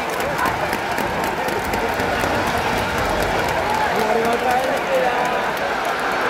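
Baseball stadium crowd: a steady din of many voices with scattered clapping and occasional calls rising out of it.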